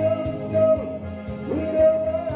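A man singing a disco song into a handheld microphone over a backing track with a steady beat. He holds long notes, one sliding down just under a second in and another starting near the end.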